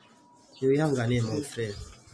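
A man's low voice, about a second of drawn-out vocal sound without clear words, starting about half a second in after a moment of near silence.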